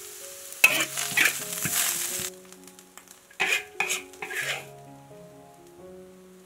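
Food stir-frying in a hot wok: sizzling with spatula strokes, a loud stretch in the first half, then three shorter strokes around the middle, with Sichuan pepper powder and ground pepper among what is in the pan. A soft melody of background music runs underneath.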